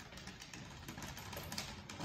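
DJI RoboMaster EP robot driving forward over a tile floor: a steady whir from its drive motors, with many small clicks from the mecanum wheel rollers on the tiles.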